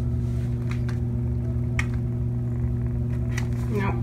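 A steady low hum with a few short, light clicks, and a woman saying 'nope' at the very end.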